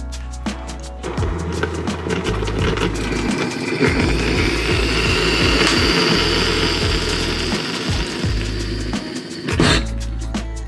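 Breville hot water dispenser running water into a ceramic mug: a steady pouring hiss that builds over the first few seconds and stops just before the end. Background music with a steady beat plays throughout.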